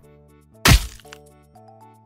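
A single sharp cracking impact sound effect for a judo throw slamming an opponent onto the mat, about two-thirds of a second in, over soft background music.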